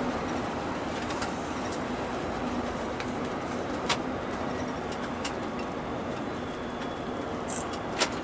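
Steady road and engine noise inside a moving vehicle, with a faint low hum and a few light clicks, the sharpest about four seconds in.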